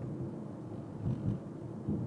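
Low, steady rumble of a car driving, heard from inside the cabin: tyre and engine noise between spoken remarks.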